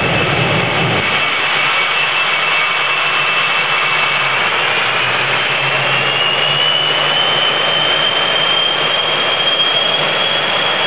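A truck's fighter-jet engine running in place with its afterburner lit, a loud steady roar with a deeper surge in the first second. Its high whine rises in pitch about five seconds in and then holds.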